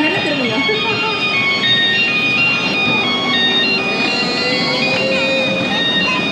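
A simple electronic jingle from a kiddie ride car: a beeping tune of short, steady notes stepping up and down, playing on while the ride runs.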